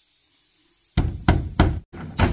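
Hammer tapping a metal pin into a small steel hinge on a wooden window: three sharp strikes in quick succession, about three a second, starting about halfway through.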